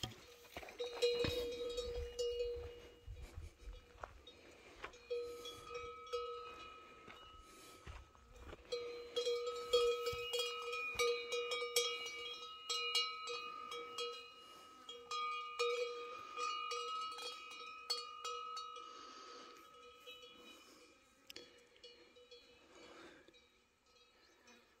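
A cowbell on grazing cattle ringing in irregular bouts as the animal moves, with short pauses between, dying away near the end.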